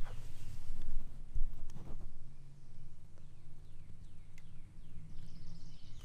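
Woodland outdoor ambience: a few birds chirping in short falling notes over a steady low hum, with a couple of soft knocks about two seconds in.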